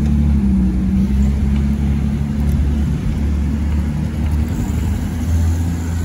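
Steady low rumble and hum of motor traffic, with engine and road noise heard while moving along a busy city street.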